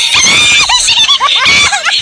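A man laughing loudly in rapid, high-pitched shrieks.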